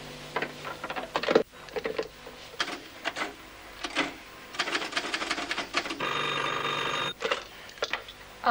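Scattered knocks and clatter, the loudest a sharp knock about a second and a half in, then a desk telephone's bell rings once for about a second near the end.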